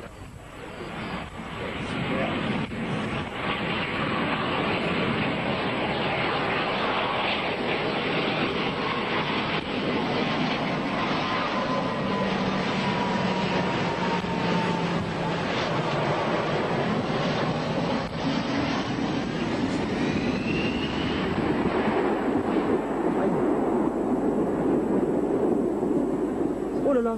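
Jet engines of an Air France Airbus A320 airliner making a low pass. The noise builds over the first few seconds and then stays loud and steady.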